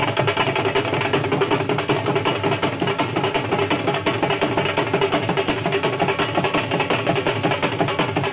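Several dhols, double-headed barrel drums, beaten together with sticks in a fast, steady, unbroken rhythm.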